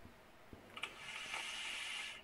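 A draw on a vape mod: a faint click, then a steady airy hiss of air pulled through the atomizer for about a second and a half, stopping abruptly.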